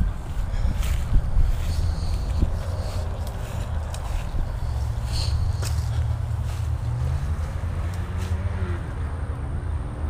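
Footsteps brushing and crunching through dry grass in the first couple of seconds, over a steady low rumble.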